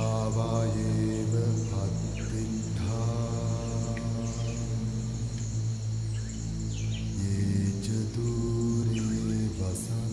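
Soundtrack of chanting voices over a steady low drone, the chanted phrases starting at the outset, about three seconds in and again near the end. A steady high shrill like insects sits above them.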